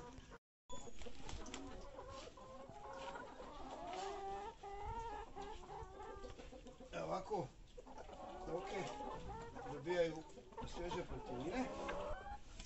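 A flock of Tetra laying hens clucking continuously as they crowd together, with a few scraping knocks from a hoe digging in the soil.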